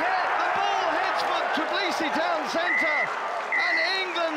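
Many voices shouting and cheering, with applause, at the end of a rugby match. A high, steady whistle sounds twice in the second half, fitting a referee's full-time whistle.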